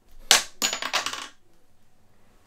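Hard plastic pen parts handled on a desk: one sharp snap, then a quick run of clicks and rattling lasting under a second.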